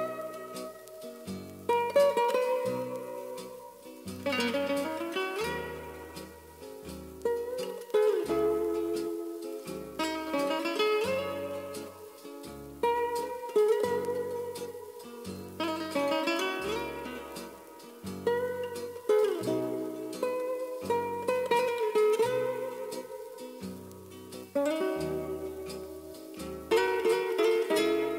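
Music led by a plucked string instrument over a bass line, played from a vinyl record on a Crosley C3 turntable and heard straight from its built-in preamp's line output.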